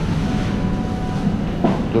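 Steady low rumble of large-store background noise, with a faint steady hum running over it.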